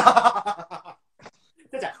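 A man's short burst of laughter lasting under a second, then a brief pause before a spoken word.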